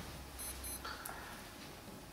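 Two short, high electronic beeps in quick succession about half a second in, faint over quiet room tone.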